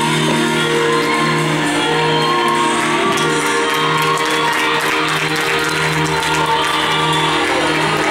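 Recorded gospel music playing, built on held chords, with voices shouting and whooping over it in the middle stretch.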